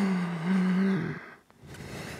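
A man's voiced exhale with effort, during a dumbbell squat-and-press: a low held tone for about a second that steps up slightly halfway, then quieter breathing.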